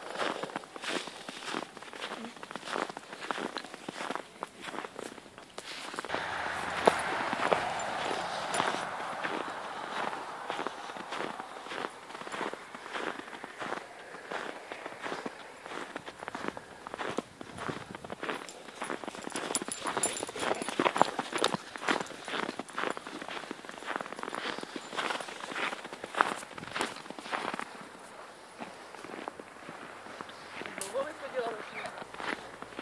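Footsteps crunching through snow at a steady walking pace, with a broader swell of noise from about six to ten seconds in.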